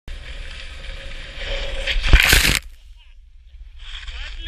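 Skis sliding fast over snow, growing louder, then a hard skid stop with a loud rush of spraying snow a little after two seconds in that cuts off suddenly. Voices start just before the end.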